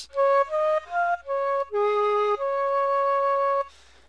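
Dry sampled Chinese flute from Logic's EXS24 sampler playing a short melody with no effects: three short notes stepping upward, one back down, a lower note, then a long held note that stops cleanly.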